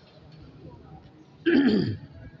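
A man clearing his throat once, briefly and loudly, near the end, after a short lull of quiet room tone.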